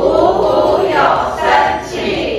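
A group of many voices calling out together in unison, with background music underneath.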